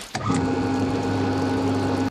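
Film sound effect of an armoured personnel carrier's powered door mechanism running: a steady electric motor hum with a low drone, stopping abruptly at the end.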